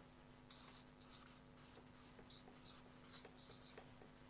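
Faint hand-writing: a run of short, quick strokes as a single word is written out by hand.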